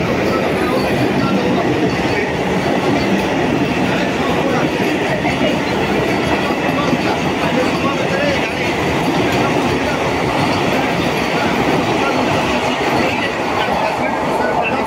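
Vande Bharat Express electric multiple-unit coaches running past close by along the platform: a steady rumble and clatter of wheels on the rails, with people talking nearby.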